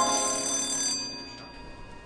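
A bright bell-like ringing, struck just before and fading away over about a second and a half.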